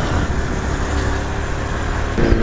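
Honda CB300 single-cylinder motorcycle engine running steadily at low revs while riding in city traffic, under a steady rush of wind and road noise.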